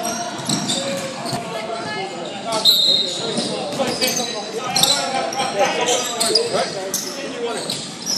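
Basketball game sounds on a hardwood gym court: a ball bouncing, mixed with players' footsteps and voices calling out in the large hall.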